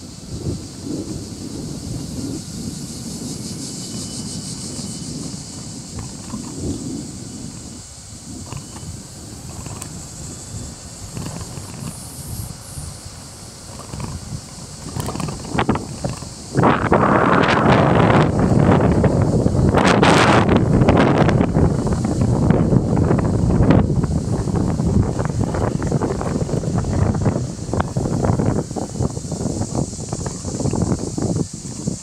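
Wind buffeting the microphone during an outdoor walk: a low, irregular rumble that turns abruptly much louder and gustier just past halfway and stays that way almost to the end.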